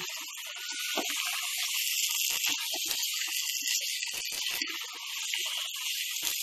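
Thick masala gravy with paneer sizzling in a nonstick pan, a steady hiss, while a silicone spatula stirs it gently with soft scrapes and small clicks.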